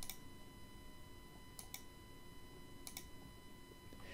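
Faint computer mouse clicks: one at the start, then two quick pairs of clicks about one and a half and three seconds in, over quiet room tone with a thin steady whine.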